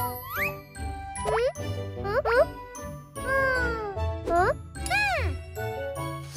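Children's cartoon background music with a cartoon character's wordless, high-pitched vocal exclamations, a run of short calls that swoop up and down in pitch.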